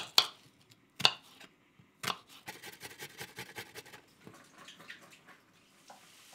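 Kitchen knife cutting a shallot on a wooden chopping board: three sharp separate cuts about a second apart, then a quick run of chops that grows fainter and dies away.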